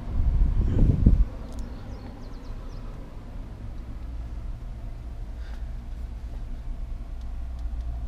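A loud low rumble of camera handling for about the first second, then a steady low background hum.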